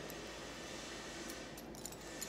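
Quiet room tone in a workshop: an even faint background hiss with a few faint small ticks.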